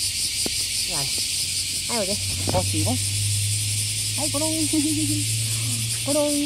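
Steady, high insect chorus filling the background, with a few short swooping vocal sounds near the start, in the middle and near the end, and a low steady hum from about two seconds in.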